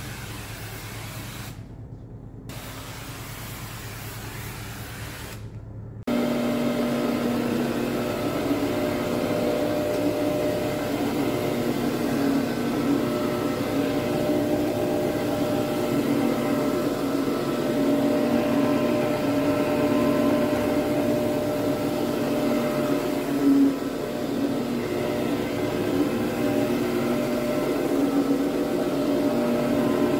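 A quieter low hum for the first few seconds, then, about six seconds in, an electric carpet agitation machine starts in loud: its motor and brushes run with a steady whine over the carpet.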